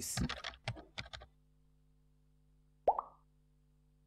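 A voice-over trails off in the first second, then there is near silence with a faint hum. About three seconds in, one short, rising 'bloop' sound effect from an animated advert plays as contact details appear on screen.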